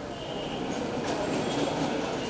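Steady rumbling noise of a busy street, with no clear voice, growing a little louder about a second in.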